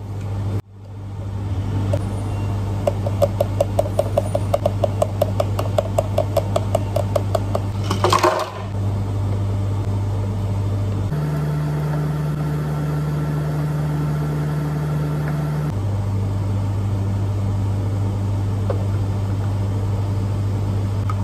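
Drink-making at a bubble-tea counter over a steady hum of café machines. A run of quick, even clicks, about five a second, lasts several seconds; then, about eight seconds in, a brief loud rush comes as ice goes into a plastic blender jar. For a few seconds in the middle the hum shifts to a different steady tone as another machine runs.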